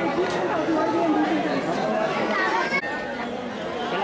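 Crowd chatter: many people talking at once, with a short dip almost three seconds in.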